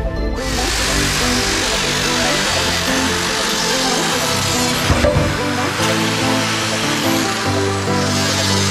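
Electronic background music over an electric rotary sander with a sanding disc running against carved cedar wood, a steady grinding hiss.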